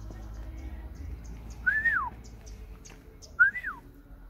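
Two short whistled notes about a second and a half apart, each rising, holding briefly, then sliding down in pitch.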